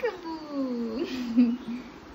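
A toddler's long vocal call that slides down in pitch over the first second and then stays low, with a brief upturn about a second in.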